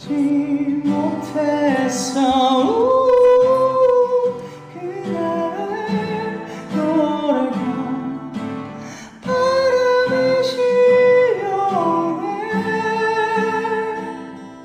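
A male singer sings a slow, emotional song to his own acoustic guitar, in phrases with long held notes and vibrato and short pauses between them.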